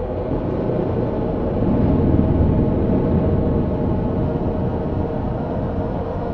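Ambient sound-design drone: a dense low rumble with a steady hum over it, swelling louder about two seconds in and then easing back.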